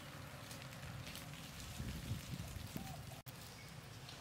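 Outdoor ambience: a steady low rumble with scattered faint crackles, broken by a brief dropout about three seconds in.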